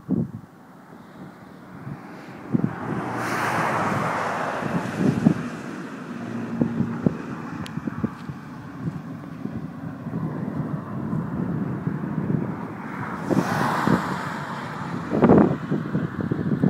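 Wind buffeting the microphone over the steady rush of a moving car, with crackling gusts. The rush swells twice, about three seconds in and again about thirteen seconds in.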